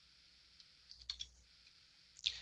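A few faint computer mouse clicks in quick succession about a second in, over near silence.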